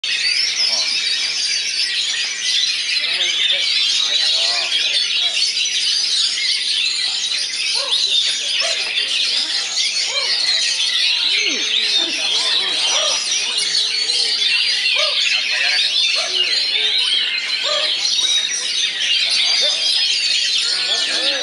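Many caged oriental magpie-robins (kacer) singing at once in a competition duel: a dense, continuous chorus of fast, high whistles, trills and chatter with no pauses.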